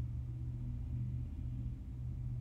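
Low, steady background hum and rumble with no speech: room noise picked up by the microphone.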